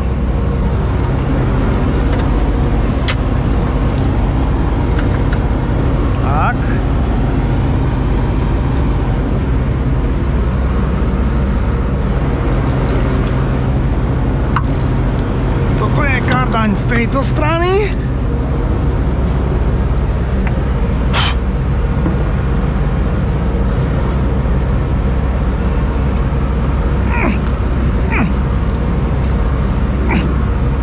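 New Holland CX combine's diesel engine idling steadily, with a couple of sharp metal clicks as the corn header's drive shafts are connected.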